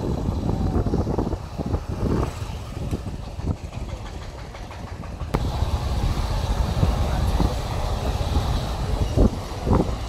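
Wind buffeting the microphone with low, gusty road and vehicle noise, recorded while moving along a road.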